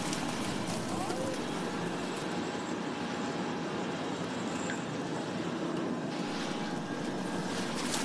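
Steady running noise of a ship's engine and deck machinery, an even rumbling hum with faint steady tones.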